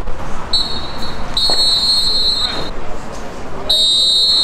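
Referee's whistle blown three times at a steady high pitch: a short blast about half a second in, a longer blast of about a second, and a third starting just before the end.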